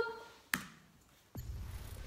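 A single sharp click about half a second in as playback is started, then a low, steady rumble from the opening of the music video's soundtrack starts about a second and a half in.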